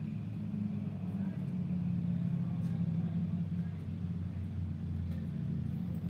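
A steady low rumble like a running motor vehicle.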